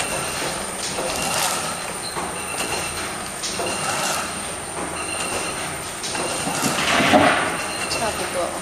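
Medical sterilization pouch bag-making machine running, its feed, seal and cut cycle repeating in a regular rhythm of short mechanical clacks, with a louder stretch near the end.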